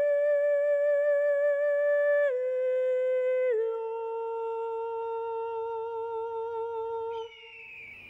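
A single high voice singing unaccompanied: long held notes with vibrato that step down in pitch twice, then stop about seven seconds in.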